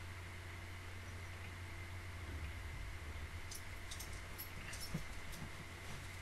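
Quiet room tone through a desk microphone: a steady low hum with a faint high whine, and a few soft clicks in the second half.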